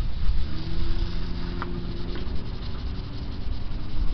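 A cloth rubbing over a hazy plastic car headlight lens, over a steady low rumble. A faint hum of a few steady low tones comes in about half a second in and fades after about two seconds.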